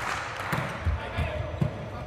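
Volleyball struck hard on a serve, a sharp smack about half a second in, followed by a couple of duller thumps of the ball in play.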